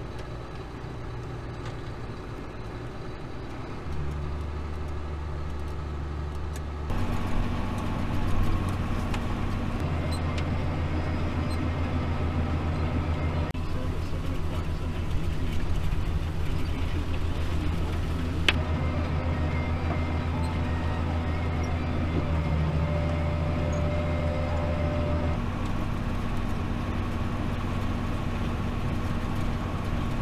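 John Deere 7700 tractor's diesel engine running steadily, heard from inside the cab, with a Loftness stalk shredder running behind it through cornstalks. The sound gets louder in two steps, about four and seven seconds in, then holds steady.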